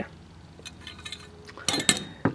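Steel parts of a disassembled Mars 86 air rifle action being handled: a few faint light ticks, then two or three sharp metallic clinks near the end.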